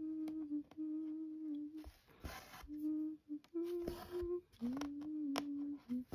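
A person humming a slow tune, a string of held notes at much the same low pitch with short breaks between them. About two seconds in comes a brief rasp of floss being drawn through Aida fabric.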